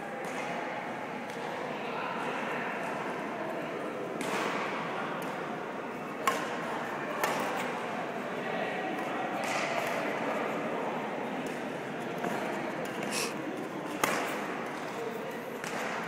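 Badminton rally: about half a dozen sharp hits, racket strokes on the shuttlecock, scattered through a steady murmur of voices in a reverberant gym hall.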